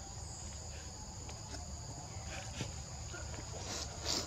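Steady high-pitched insect drone holding two even tones throughout, with a few faint soft taps and rustles.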